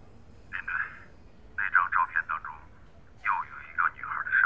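A voice speaking over a phone line, thin and cut off at the low end, in three short phrases.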